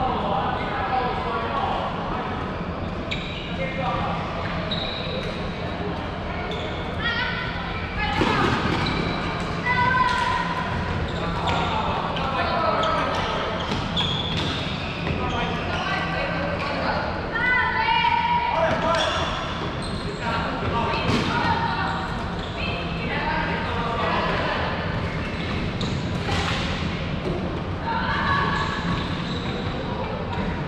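Floorball play in a large sports hall: players' voices calling out across the court, mixed with sharp knocks of sticks and the plastic ball, all echoing in the hall.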